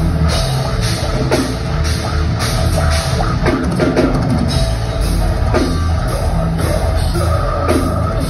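Heavy metal band playing live through a club PA: distorted guitars and bass over drums keeping a steady, driving beat with regular cymbal hits.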